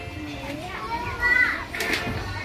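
Children's voices and background chatter, with one short high-pitched child's voice about a second and a half in.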